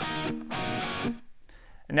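Electric guitar tuned down a half step, two chord strikes, the second ringing for about half a second before dying away. The chord is a three-note shape on the D, G and B strings at the seventh to ninth frets, struck twice with the pinky then lifted.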